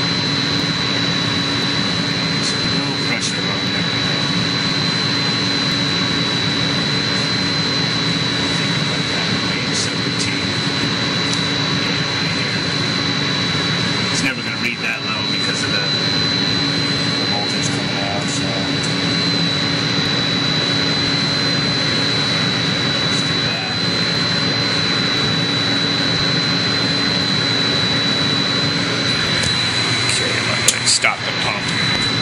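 Water pump motor driven by a variable frequency drive (VFD), running steadily with a constant high-pitched whine over a steady hum.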